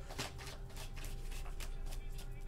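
A tarot deck being shuffled by hand: a quick, irregular run of card clicks and flicks.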